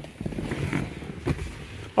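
Shuffling and rustling of a person climbing into a car's back seat, clothing against the seat upholstery, with a light knock a little over a second in.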